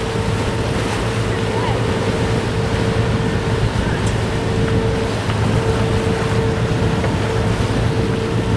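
Sailing catamaran under way, its diesel engine running with a steady hum, over the rush of water along the hulls and wind on the microphone.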